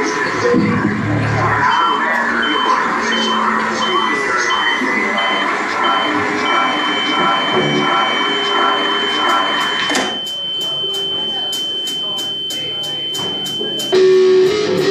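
A high electronic beep repeating about twice a second over crowd chatter, then turning into one long unbroken tone; from about two-thirds of the way in the chatter drops and quick, even ticks run under the held tone.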